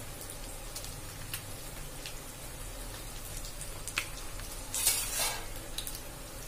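Fish pieces shallow-frying in hot oil: a steady sizzle with a few sharp crackles, and a louder burst of sizzling about five seconds in.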